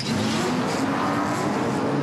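Race car engines revving loudly at a starting line, a steady wash of engine noise with a low drone that sinks slightly in pitch.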